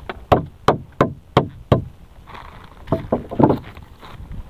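A quick run of five sharp knocks on a small fishing boat's hull, about three a second, while a gill net is hauled aboard, then a looser cluster of knocks near the end.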